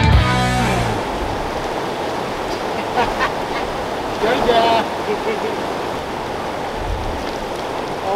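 Rushing river rapids: a steady wash of fast-flowing water over rocks. The tail of background music fades out within the first second, and faint voices come through the water a few seconds in.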